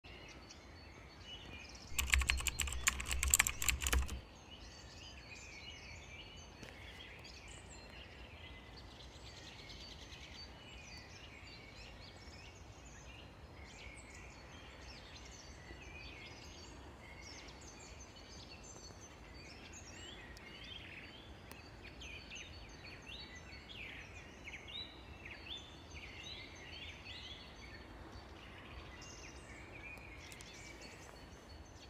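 Faint birdsong outdoors: many short chirps and calls from several birds, busier in the second half. About two seconds in, a loud crackling rustle lasts about two seconds.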